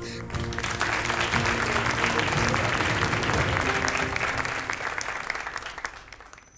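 Studio audience applauding over background music; the clapping starts just after the beginning and fades away near the end.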